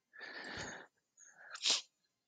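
A man's quiet sneeze: a breathy rush of air, then a short sharp hiss near the end.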